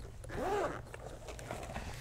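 Zipper of a moulded hard-shell carrying case being pulled open around its edge, a faint, irregular rasping. A brief hum from a man's voice about half a second in.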